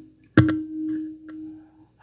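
A single struck note with a pure, steady pitch that starts sharply about half a second in and rings out, fading over a second and a half.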